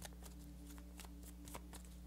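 A deck of tarot cards being shuffled by hand: soft, irregular flicks and clicks of cards against each other, quiet, over a faint steady hum.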